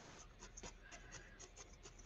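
Felting needle repeatedly stabbing into a wool figure: a faint, irregular run of soft scratchy pokes, about four a second.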